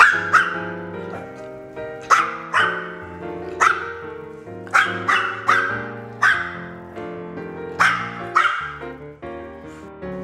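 Small dogs yapping in play, a string of about a dozen sharp barks at uneven spacing, over background music.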